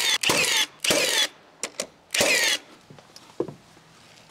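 Hand saw cutting through timber: a quick run of rasping strokes about half a second apart, two light clicks, then one more stroke about two seconds in, followed by a few faint knocks.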